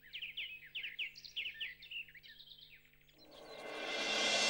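Small birds chirping: a quick run of short, down-slurred chirps that thins out after about three seconds, followed by a rising swell of sound near the end.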